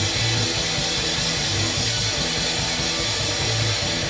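Rock band playing live: two electric guitars over a drum kit with cymbals, an instrumental passage with a run of held low notes.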